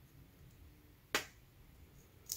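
A single sharp click about a second in, from hands handling a small paper tag with jute twine and a needle; otherwise faint room tone.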